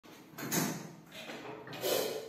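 Soft bumps and rustling as a drummer settles in behind a drum kit, with two louder bumps, about half a second in and near the end.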